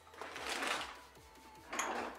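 Rummaging noises from someone searching a workspace: two bursts of rustling and clattering, the second near the end, over quiet background music.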